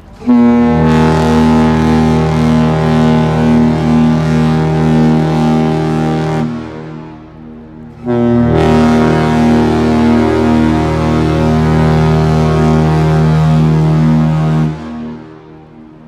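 The ship's horn of the thousand-foot Great Lakes freighter James R. Barker sounding two long blasts of about six seconds each, a second and a half apart: a loud, steady, deep tone.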